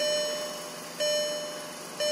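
A car's door-open warning chime, a bell-like tone that rings and fades, sounding about once a second (twice here): the signal that a door is left open.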